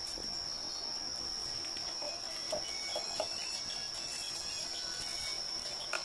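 A cricket trilling steadily, one continuous high tone. A few soft wet squelches come in the middle, from a hand kneading spice paste in a plastic bowl.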